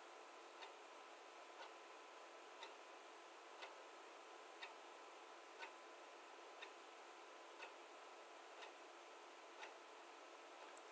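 Near silence: faint room tone with a soft, even tick about once a second.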